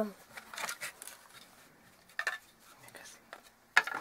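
Hands handling and fitting together parts of a small plastic electronics case: a few faint taps and rustles, then a sharp click near the end.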